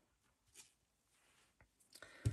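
Near silence: room tone, with a faint brief rustle about half a second in and a fainter one near the end.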